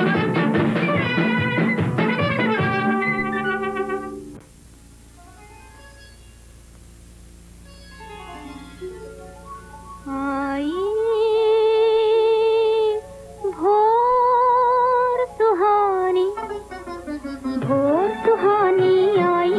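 Old Hindi film song: a full orchestral passage with a drum beat fades after about four seconds into quieter instrumental phrases. About ten seconds in, a high female voice comes in, singing long held notes with vibrato.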